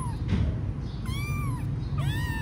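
Kittens mewing in short, high calls that rise and fall, one trailing off at the start and another about a second in, over a steady low rumble.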